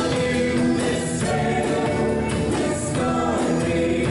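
A choir singing a hymn in long held notes, with instrumental accompaniment.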